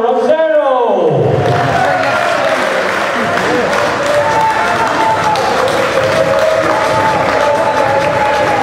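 A man's voice in the first second gives way to a hall audience applauding and cheering steadily for the championship-winning checkout in a darts final.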